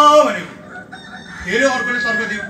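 A loud, drawn-out crowing call like a rooster's, its pitch rising then falling, at the very start, and a second, shorter call near the end.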